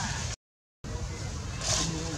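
Steady low rumbling background noise, broken by about half a second of dead silence at an edit a third of a second in, with a short hissy sound near the end.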